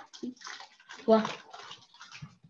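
A child's voice coming through a video call, a short halting syllable about a second in between brief noisy, hissy fragments.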